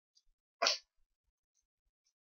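A single short, sharp burst of breath from a person, sneeze-like, about half a second in. A few faint ticks come before and after it.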